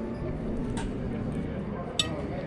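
Low, steady background murmur of distant voices at a meal table, with faint clicks about a second in and at the very end.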